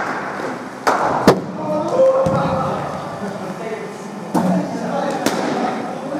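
Sharp, echoing knocks of a hard cricket ball being struck by the bat and hitting hard surfaces in a large hall, two close together about a second in and two more in the second half, with voices talking in the background.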